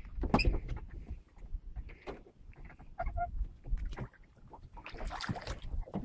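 Wind on the microphone and handling knocks on a small boat as an Australian salmon is released over the side, with a splash of water about five seconds in.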